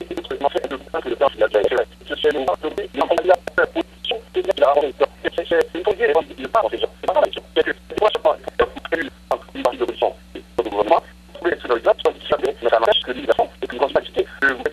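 Only speech: a voice talking continuously over a telephone line, thin-sounding and cut off in the highs, with a steady low hum underneath.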